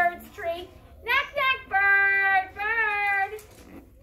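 Young children singing a short phrase in high voices, with a few long held and wavering notes in the middle; the singing stops about three and a half seconds in.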